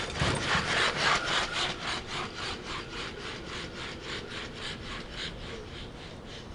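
A rhythmic rasping scrape, about four strokes a second, slowly fading away.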